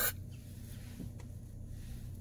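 A short hiss from an aerosol air-freshener can spraying, right at the start, then a steady low hum with a couple of faint clicks.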